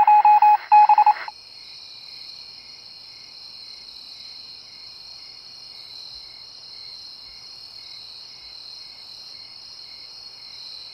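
A short run of loud electronic beeps, about five in just over a second, then crickets chirping steadily: a high continuous trill with a couple of chirps a second.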